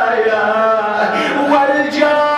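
A man's solo voice chanting an Arabic supplication (dua) in a slow melodic recitation, with long held notes that bend and glide in pitch.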